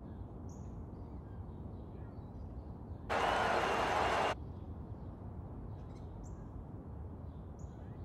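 Outdoor ambience: a steady low rumble with a few short, high bird chirps. About three seconds in, a louder burst of noise lasts just over a second.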